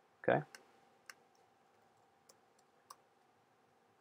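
A handful of faint, isolated clicks from a computer keyboard and mouse, spaced irregularly, after a short spoken "okay".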